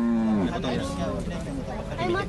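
A sacrificial cow held down for slaughter lows once: a low, drawn-out call that falls in pitch and ends about half a second in. Men's voices follow.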